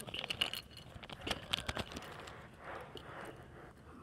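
Small plastic LEGO minifigure pieces clicking and rattling as they are tipped out of a blind-bag packet and handled, with the packet rustling.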